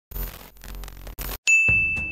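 Editing sound effects for an intro: about a second and a half of crackling, stuttering TV-static noise that cuts out briefly twice, then a sudden bright single-note ding that rings on.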